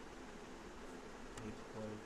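Faint steady electrical hum from the recording microphone, with a single computer-keyboard keystroke click about a second and a half in.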